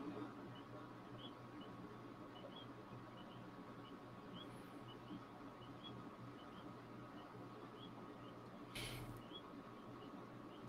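Nearly silent: a faint steady hum under soft, short high chirps repeating two or three times a second, with a brief hiss near the end.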